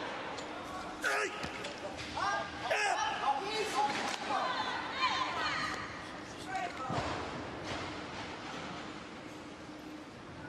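Arena crowd shouting encouragement as a weightlifter cleans a heavy barbell, with knocks and thuds from the bar and bumper plates as it leaves the floor and is caught. The shouts build over the first few seconds and fade once the bar is racked on the shoulders.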